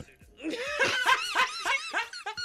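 People laughing: a quick run of short, high-pitched laughs that starts about half a second in, after a brief pause.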